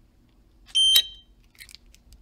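A little piezo buzzer on the Arduino RFID breadboard gives one short, high-pitched beep as the RFID card is read. The beep ends in a sharp click from the relay switching the 12-volt electric door strike.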